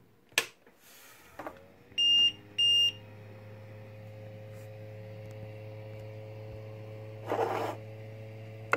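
Anet A3 3D printer powering on: a click, then two short high beeps from its buzzer about two seconds in, as its control screen starts up. A steady low hum rises into place and runs on as the machine idles, with a brief noise near the end.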